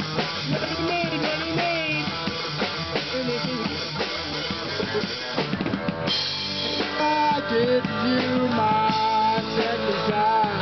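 Live amateur rock band playing a stretch without singing: drum kit driving the beat under electric guitar. About six seconds in, cymbals come in and the band gets louder.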